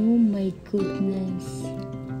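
Background music of held, guitar-like notes, with a short vocal sound that bends in pitch right at the start.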